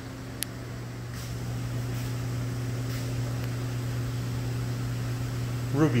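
Steady low machinery hum over a hiss of moving air, getting a little louder over the first couple of seconds, with one brief high click just under half a second in.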